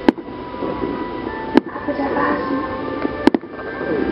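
Sharp, very short pops about every second and a half, over crowd chatter and background music.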